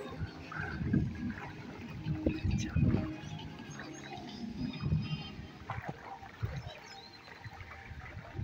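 Outdoor ambience with faint background music and irregular low rumbles, typical of wind buffeting a phone's microphone.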